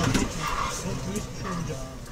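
People's voices calling out over a low rumble that dies down.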